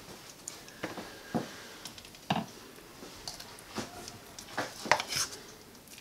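A handful of light, short clicks and scrapes from a metal knife against a bowl and wire cooling rack as cream-cheese icing is scooped and spread onto a cookie.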